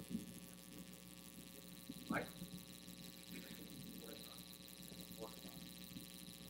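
Quiet room tone with a steady electrical mains hum through the sound system, broken by a few faint, brief sounds, the clearest about two seconds in.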